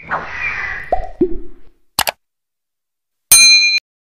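Sound effects for an animated logo: a swoosh, two quick pops dropping in pitch about a second in, a short click, then a bright ding near the end that cuts off abruptly.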